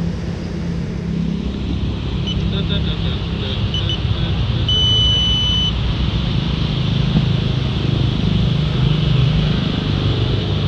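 A few short electronic beeps at different pitches, then one steady high beep lasting about a second, from the FPV setup being readied for flight. Under them runs a constant low rumble.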